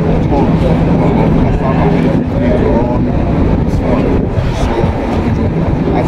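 Men talking over a loud, steady low rumble with a constant hum underneath.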